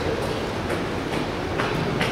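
Horse's hoofbeats on soft arena dirt at a lope, a faint beat about twice a second over a steady rumbling background.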